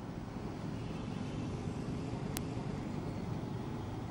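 Steady low rumble of road traffic and street noise picked up by an outdoor reporter's open microphone, with one short click a little past halfway.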